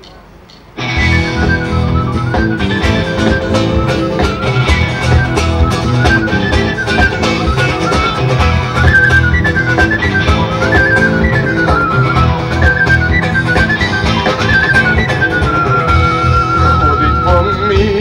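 A band strikes up a fast dance tune about a second in, loud: drums and guitar with a high melody line stepping up and down over a steady beat.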